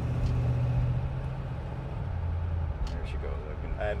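1962 Ford Galaxie 500's engine and twin exhaust running as a low, steady drone heard inside the cabin while cruising, dropping in pitch about two seconds in.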